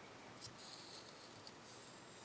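Near silence, with faint rustling of quilting thread being drawn through a folded paper star.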